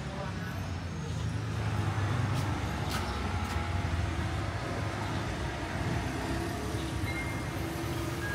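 Street traffic: a motor vehicle's low engine rumble that swells about a second in and carries on steadily, with a couple of faint clicks.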